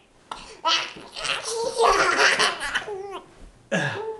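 A toddler laughing in repeated bursts, loudest around the middle.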